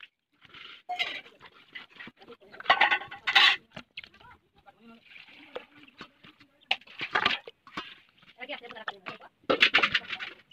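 Water splashing and sloshing in a pot, in irregular bursts, as cut fish pieces are put in and washed by hand.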